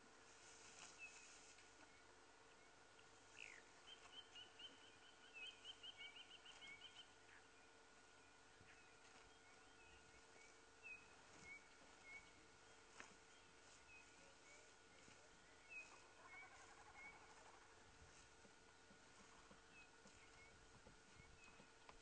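Near silence of open bush with faint small-bird calls: short chirps every second or so and a quick trill about four seconds in lasting some three seconds, over a faint steady hum.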